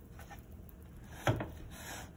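A plastic spatula scraping against a nonstick frying pan as a grilled cheese sandwich is flipped, then a single soft thud about a second and a quarter in as the sandwich drops back into the pan.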